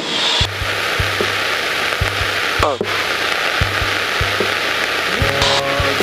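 Steady cruising drone of an Aquila AT01 light aircraft's Rotax 912 engine and propeller, heard in the cockpit through the headset intercom. A hiss of wind and engine noise opens abruptly about half a second in and drops out shortly before the end, with a few scattered low thumps.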